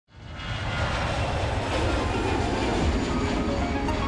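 Steady jet aircraft engine noise that fades in quickly at the start, with a few notes of music coming in near the end.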